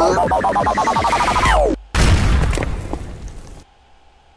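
Animated cartoon soundtrack: a character's voice crying 'no' over and over with music behind it, cut off abruptly just under two seconds in. Then a sudden loud boom, an explosion sound effect, that fades away over about a second and a half.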